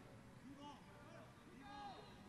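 Faint, distant shouts of players calling out on the football pitch, twice, over near silence.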